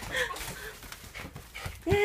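Shiba Inu whining in excited greeting: soft scuffling and clicks, then one arched whine near the end.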